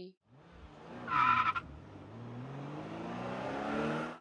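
A car's tyres squeal briefly about a second in, then its engine rises steadily in pitch as it speeds up.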